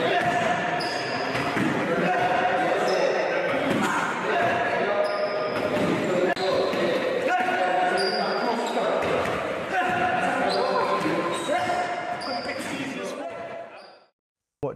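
Boxing gloves thudding on pads and bags, with men's voices shouting over the hits.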